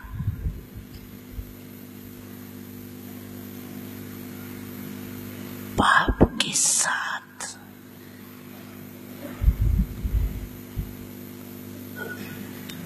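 An elderly woman's slow, halting speech into a close microphone, a few breathy words around the middle and a few deep ones near the end, with long pauses between them. A steady electrical hum runs underneath.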